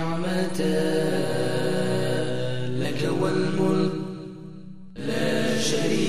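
A low male voice chanting a slow Islamic religious chant in long held notes. It fades about four seconds in and comes back suddenly about a second later.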